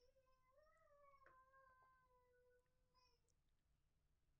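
A faint, drawn-out pitched cry lasting about three seconds, rising a little early on and then slowly falling before it stops.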